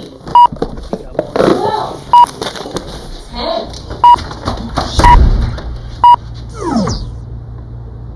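Short electronic beeps at one steady pitch, five of them spaced one to two seconds apart, from a home automation system counting down to a lockdown. Snatches of voice fall between the beeps, and near the end a tone sweeps steeply down.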